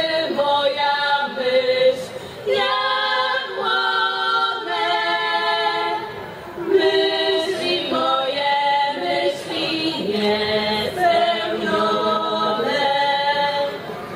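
Women's folk vocal ensemble singing a Polish folk song a cappella in several-part harmony. The song moves in phrases of long held notes, with brief breaks between phrases.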